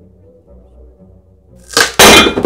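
A hot-glued butt joint in three-quarter-inch plywood cracking apart under a load of iron weight plates, with a single sudden loud crack near the end. The joint fails at the glue line.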